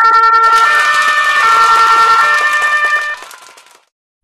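Ambulance siren sound effect, alternating between two pitches. It is loud, then drops off about three seconds in and fades out.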